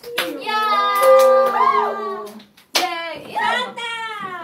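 Several young women's voices holding a long sung note together, one voice swooping up and back down, with a few sharp hand claps.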